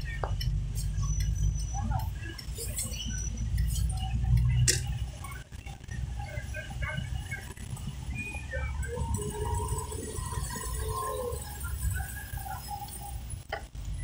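Low, steady rumble of a car's engine and tyres heard from inside the cabin while it drives slowly, easing off briefly about five seconds in. Faint, short pitched sounds come and go over it.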